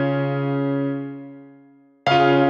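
Instrumental background music: one held keyboard chord slowly dying away, almost silent near the end.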